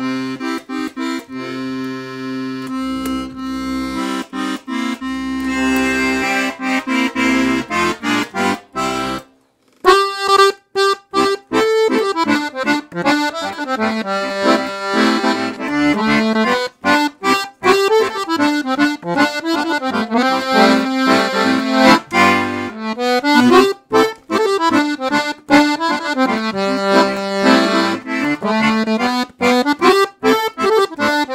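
Excelsior Accordiana Model 320 piano accordion being played. It starts with held chords over changing bass notes, breaks off briefly about nine seconds in, then plays a lively tune on the treble keys with bass-button accompaniment.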